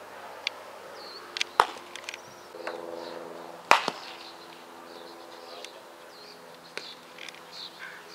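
Two loud, sharp cracks of a softball striking hard, one about a second and a half in and one near the middle, with lighter clicks between. Small chirps, like birds, run throughout, and a faint steady hum sets in about two and a half seconds in.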